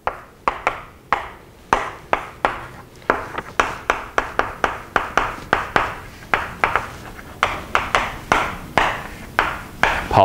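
Chalk tapping and scraping on a blackboard in quick short strokes, about three a second, as a structure and a word are written.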